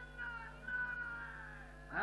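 A man's voice held in long, high notes that bend slowly up and down, sung or chanted rather than spoken.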